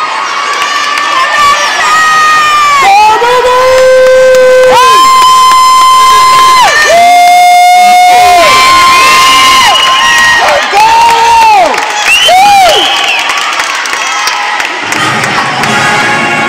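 Cheerleading squad shouting a cheer in unison: a string of drawn-out yells, each held for a second or two and dropping in pitch at the end.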